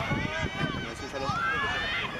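Football spectators and coaches shouting, several voices overlapping, with one long rising shout in the second half.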